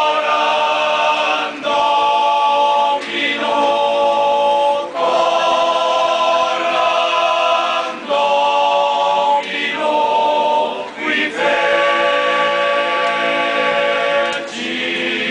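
Men's choir singing a Latin Christmas hymn unaccompanied, in sustained chords, the phrases breaking off and starting again every couple of seconds.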